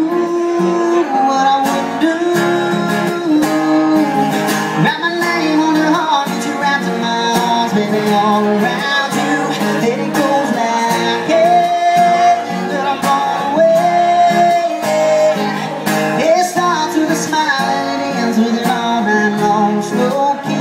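Steel-string acoustic guitar strummed in a steady rhythm, with a man's wordless vocal lines held and sliding over it at times.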